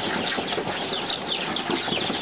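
Many baby chicks peeping at once, a dense chorus of short, high, falling peeps, with rustling and scratching as they scramble about in a tipped cardboard box.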